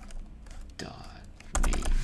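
Computer keyboard keystrokes: a few scattered taps, then a quick run of several keys about one and a half seconds in.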